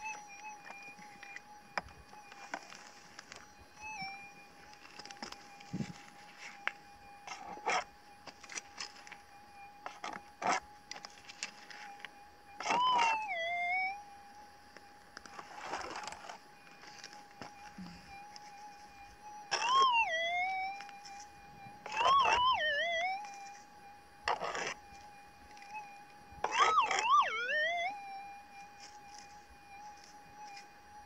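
Minelab SDC 2300 gold detector holding a steady threshold tone. Four times, about a third, two thirds and near the end of the way through, the tone swells into a louder warbling signal that rises and falls as dug soil holding a target is passed over the coil. Short scrapes and knocks of digging in gravelly soil come between the signals.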